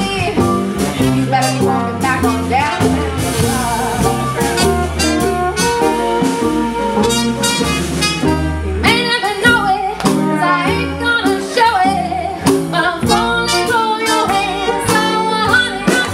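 Live roots band playing: fiddle and trumpet over mandolin, electric guitar, upright bass and drums, with a steady drum beat.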